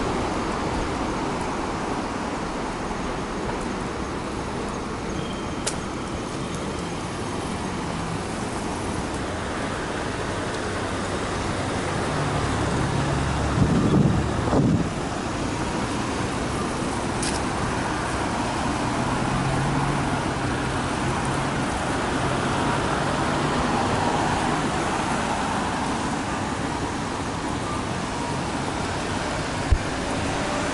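Steady road traffic on a multi-lane street: tyre and engine noise from passing cars and buses, swelling as a vehicle goes by about halfway through. A single sharp knock near the end.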